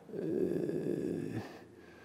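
A man's soft, breathy chuckle lasting about a second and a half, then fading.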